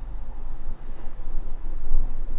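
A steady low rumble, with no speech.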